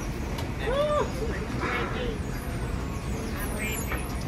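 Airport baggage carousel running with a steady low rumble, with snatches of voices from people waiting around it.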